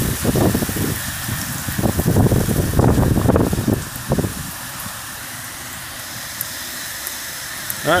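Heavy thunderstorm rain pouring down, with uneven rumbling gusts of wind on the phone microphone in the first half, settling after about four seconds into a steady rain hiss.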